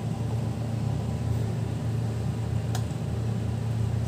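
A steady low mechanical hum, with one light click about three-quarters of the way through.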